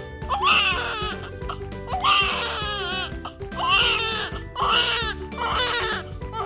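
A newborn baby crying in about five separate wails, each under a second long, over background music.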